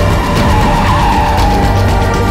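Tyres squealing as an ambulance corners hard: a wavering squeal of about a second and a half, over loud, driving action music.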